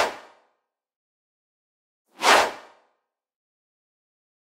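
Whoosh transition sound effects marking slide changes: the fading tail of one right at the start and a full one a little over two seconds in, each a short swish that dies away within half a second.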